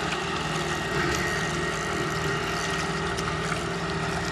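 An engine idling steadily: a low, even hum with a few held tones.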